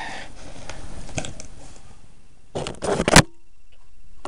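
Cardboard box of a hermit crab kit being handled and opened: rustling and scraping, then a quick run of crackling tears about two and a half seconds in, ending in a sharp snap, the loudest sound.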